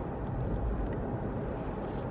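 Steady road and engine rumble inside the cabin of a moving Volkswagen car, with a short hiss just before the end.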